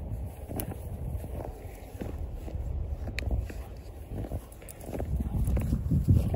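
Irregular crunching and scuffing of a dog's paws and a person's footsteps in fresh snow as the dog digs and bounds about, getting louder near the end.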